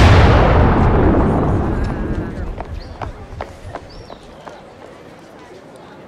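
A sudden loud boom that dies away over about three seconds, followed by a few faint clicks.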